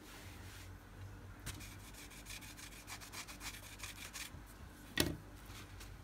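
Cotton-tipped cleaning tool wiping and rubbing across a metal nail-stamping plate in a run of short scratchy strokes. A single sharp knock comes about five seconds in, the loudest moment.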